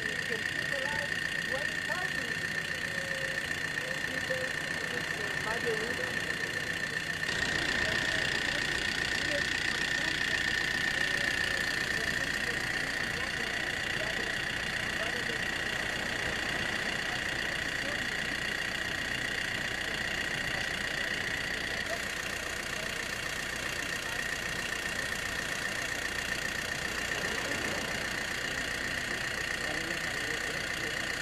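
A mobile water-filtration unit's machinery running steadily, with a constant high whine and an engine-like drone that grows louder and fuller about seven seconds in, under the murmur of a crowd's voices.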